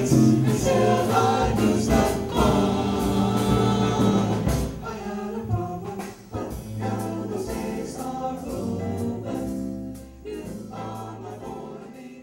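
A vocal group singing a pop-style song with band accompaniment and a steady beat, gradually getting quieter toward the end.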